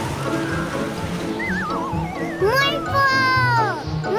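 Cartoon background music, with a high wavering cry and then a long child's wordless cry that rises and falls in pitch over the last two and a half seconds.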